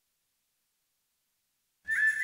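Silence for most of two seconds, then right at the end a sudden high, steady whistle-like tone with a hiss breaks in: the opening of the intro music for an animated title.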